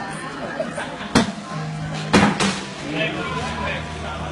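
Cornhole bean bags landing with sharp thuds on plywood boards, three times: once about a second in, then twice in quick succession just after two seconds.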